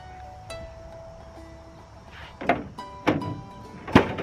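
Ford F250 pickup tailgate unlatched and dropped open with no assist: a couple of clunks, then a loud bang near the end as the heavy tailgate hits the bottom of its travel, over background music with plucked notes.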